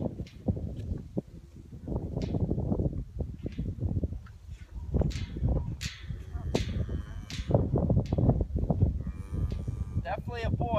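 Wind rumbling on the microphone, with a newborn Angus calf bawling briefly near the end as it is taken hold of.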